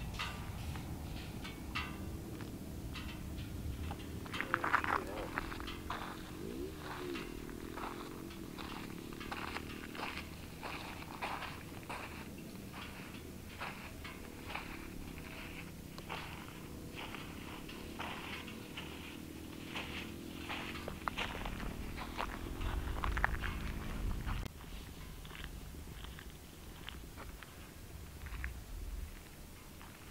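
Footsteps crunching on a dry salt crust, about two a second, over a low droning engine hum from vehicles driving out on the salt flats that rises and falls in pitch and swells twice.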